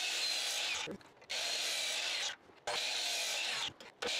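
Miter saw blade, set at a 30-degree bevel, spinning and cutting into the end of a pine 4x4, a steady hiss. It comes in several short stretches separated by brief silences.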